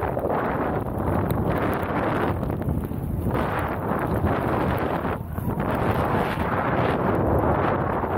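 Snowboard riding through deep powder snow, with wind rushing over the camera's microphone: a loud, steady rush of noise that dips briefly a few times.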